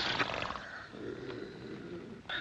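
A wrestler's low, rough, straining groan during a grapple, easing off.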